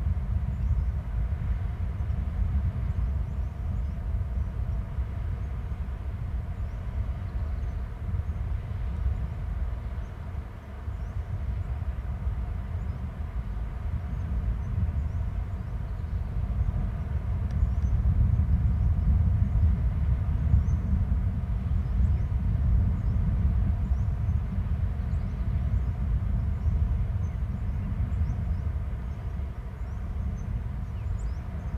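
A steady low outdoor rumble that swells louder a little past halfway, with faint scattered high ticks over it.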